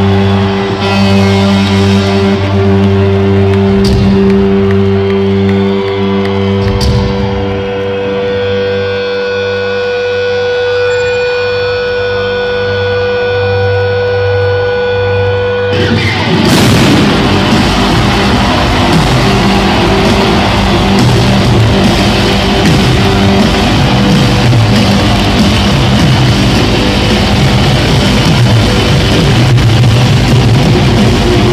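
Live rock band at arena volume: a held, distorted guitar chord rings out for about sixteen seconds, then the full band crashes back in with drums and guitars.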